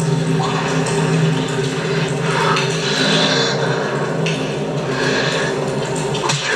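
Television drama soundtrack: a sustained low musical drone held steady, with a few faint scattered sounds from the scene over it.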